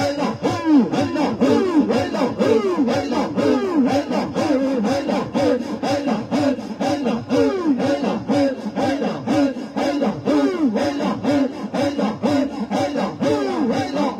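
Loud devotional chanting by a group of voices, short phrases sung over and over over a fast steady beat of about four to five strokes a second.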